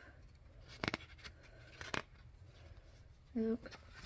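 Light handling noise of a booklet being held and opened: two short sharp ticks about a second apart. A brief voiced 'mm' comes near the end.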